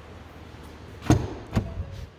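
Driver's door of a Ford Transit van being opened: a sharp clack of the latch releasing about a second in, followed by a second click and a fainter third as the door swings open.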